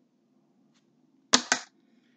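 A man's short, breathy stifled laugh: a sharp click of the mouth about a second and a half in, then two quick puffs of breath, over a faint low room hum.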